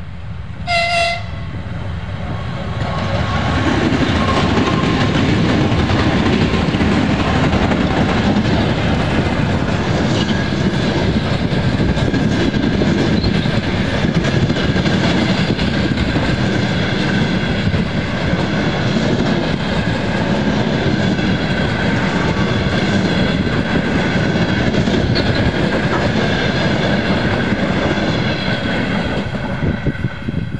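A short horn blast about a second in from a pair of 2TE10-series twin-section diesel locomotives with two-stroke 10D100 engines. Then the locomotives and the long train of passenger coaches roll past loudly and steadily, their wheels clattering over the rail joints.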